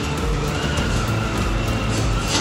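Storm noise against a building: a loud steady rush with a faint wavering whistle and scattered rattling clicks.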